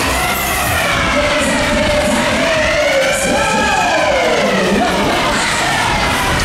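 A siren-like wail sweeping slowly up and down, played over the loud music of a fairground Berg- und Talbahn ride's sound system.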